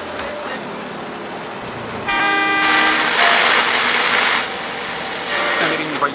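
A vehicle horn sounds about two seconds in for roughly a second, over the steady running noise of a bus interior. It runs into a louder rush of noise that lasts about two seconds before dropping back.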